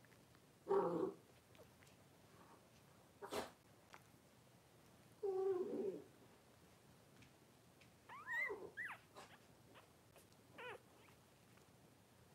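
Newborn Cavalier King Charles Spaniel puppies crying in short squeals, four times, the third a wavering squeak. There is one sharp knock about three seconds in.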